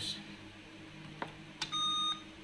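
Two small clicks, then one short steady electronic beep near the end from an Acer Aspire 4732Z laptop: its power-on self-test beep as it starts up again after the RAM was reseated.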